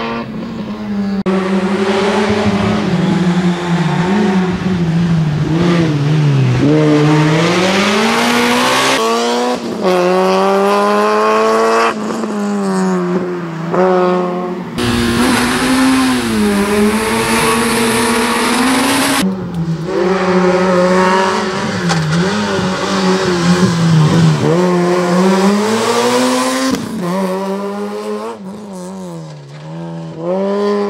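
Peugeot 106 racing car's 1.6-litre four-cylinder engine revving hard, its pitch climbing through each gear and dropping on lift-off and braking for the cones and hairpins, with tyres squealing at times. The sound breaks off abruptly several times as one pass gives way to the next.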